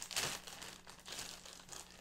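Faint crinkling and rustling of packaging being handled, with a few light clicks at the start.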